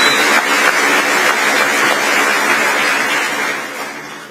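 A large audience applauding: dense, even clapping that fades away near the end.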